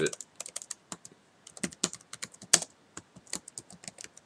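Typing on a computer keyboard: a quick, irregular run of key clicks with a brief pause about a second in.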